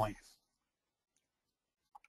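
A man's voice ends a word, then near silence, broken near the end by one faint click as the presentation advances to the next slide.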